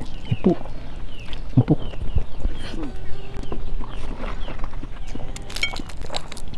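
Close mouth sounds of people eating by hand: chewing and lip smacks, with a couple of brief murmurs. Short falling bird chirps repeat in the background.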